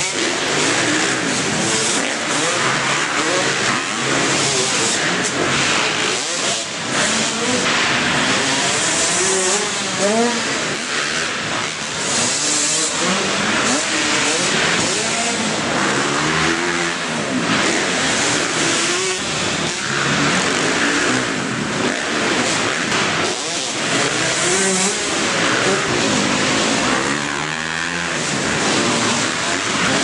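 Several motocross dirt bike engines revving hard and dropping back as riders accelerate, jump and corner around the track. The pitch rises and falls every second or two, with overlapping engines.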